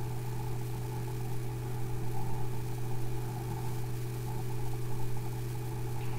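A steady low hum with a few fainter steady tones above it, unchanging throughout.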